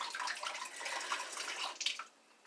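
Mouthful of rinse water spat out in a stream and splashing into a sink, with a short, sharper spurt near the end.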